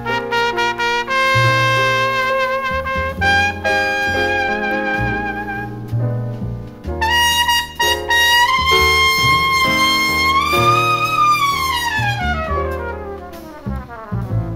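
Jazz trumpet solo over piano, double bass and drums. Near the end a long held note bends slightly upward, then falls away in a long downward glide.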